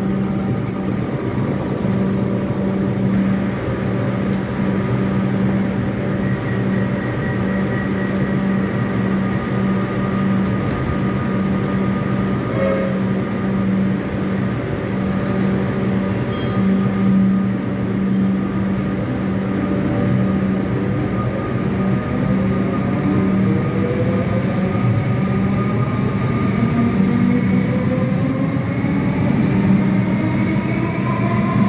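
Metro Trains Melbourne electric suburban train standing at an underground platform with a steady electrical hum, then pulling away about two-thirds of the way in, its traction motors giving a rising whine in several tones as it gathers speed.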